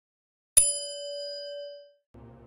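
Single bell-ding sound effect for the on-screen bell icon: one sharp strike about half a second in, then a clear ringing tone that fades away over about a second and a half.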